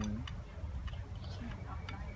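A few light, sharp clicks of a spoon against a ceramic soup bowl while eating, spaced about half a second apart, over a low steady background rumble.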